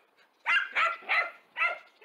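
A dog barking, four short barks in quick succession.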